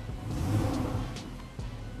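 Porsche convertible engine running, swelling in a short rev about half a second in and then settling back, with background music underneath.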